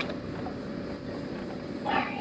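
Low steady outdoor background with a sharp click right at the start, and near the end a brief high cry from a person.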